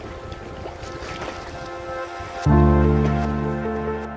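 Background music: boat and sea noise with faint music under it, then a loud sustained chord with deep bass comes in suddenly about two-thirds of the way through.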